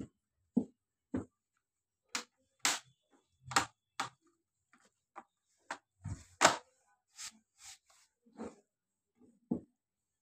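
Plastic bottom cover of an Asus TUF gaming laptop being pressed onto the chassis: a run of short, irregular clicks and knocks as its clips snap into place, the loudest about six and a half seconds in.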